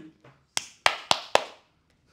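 Four sharp clicks from a man's hands, coming about a quarter second apart from about half a second in.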